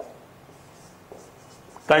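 Marker pen writing on a whiteboard: a few faint short strokes about a second apart.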